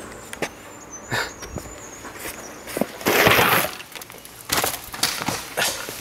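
Knocks and clatters of a mountain bike on a dirt trail, with a loud rush of noise lasting about half a second around three seconds in.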